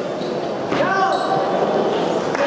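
Crowd voices in a large hall, with a louder shout from spectators about three quarters of a second in as the lift is completed.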